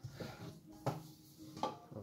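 Three faint knocks at a kitchen sink and draining rack while they are being wiped down, some with a short low ring after them.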